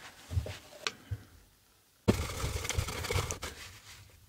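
Gloved hands handling things on a work mat, with a couple of faint clicks. About halfway through comes a scratchy rustle of a tissue wiped against a clear plastic container, lasting a second or so, as isopropyl alcohol takes off a Baystate Blue ink stain.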